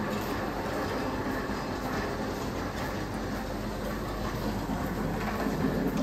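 Steady rumble of wheels rolling over a hard tiled floor, with the constant noise of a large indoor hall behind it, swelling slightly near the end.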